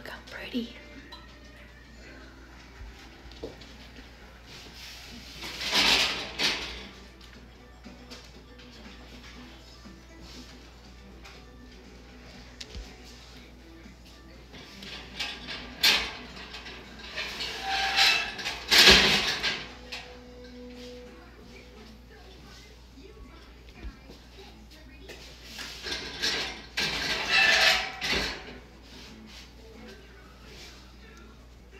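Glass quart canning jars lifted out of a hot water-bath canner with a jar lifter: water splashes and runs off each jar in three separate bursts, with a few sharp clinks of the metal lifter and glass.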